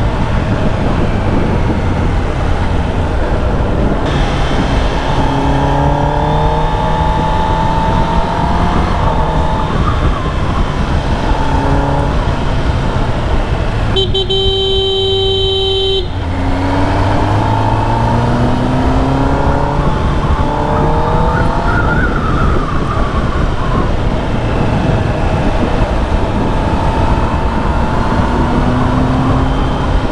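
Kawasaki Ninja ZX-10R's inline-four engine under riding load, its pitch rising under throttle and falling back several times, over steady wind rush. A vehicle horn sounds for about two seconds midway.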